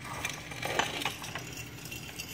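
Aluminium foil crinkling with small irregular clinks as hands grip and shift a foil-covered tray; the loudest clink comes a little under a second in.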